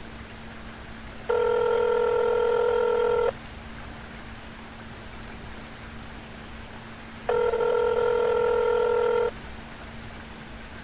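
Telephone ringback tone heard by the caller, ringing twice: two steady tones about two seconds long, four seconds apart, over a faint steady hum. The call rings unanswered.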